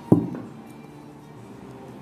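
One sharp knock just after the start, from the box being handled on the table, over steady quiet background music.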